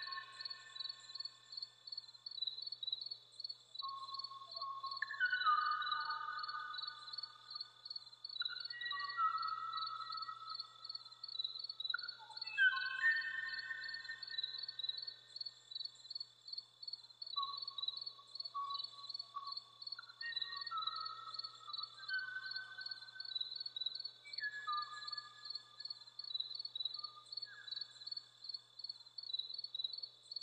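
Archival field recording of a Kauaʻi ʻōʻō, a Hawaiian honeyeater now extinct, singing: clusters of short, clear whistled notes that slide downward in pitch, repeated every few seconds. Under it runs a steady, rapidly pulsing insect trill.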